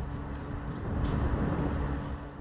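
Outdoor traffic noise with a steady engine hum, swelling a little about a second in.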